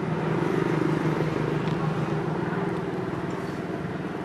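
A motor-vehicle engine running steadily with a low hum, a little louder about a second in and then slowly easing off.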